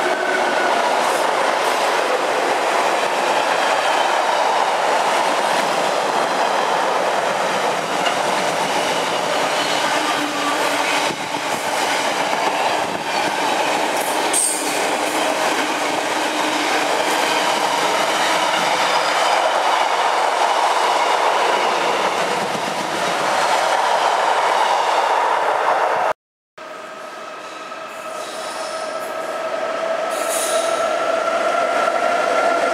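Container freight train hauled by a Class 90 electric locomotive passing at speed: a steady loud rumble of wagons on the rails, with faint high ringing tones. After a sudden cut about 26 seconds in, another container train approaches, growing steadily louder.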